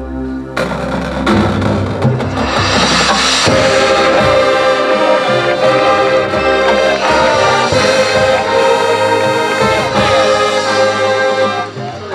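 Marching band playing. A soft sustained chord gives way about half a second in to a sudden full entrance of brass and percussion. The music builds to loud sustained brass chords, then stops briefly just before the end.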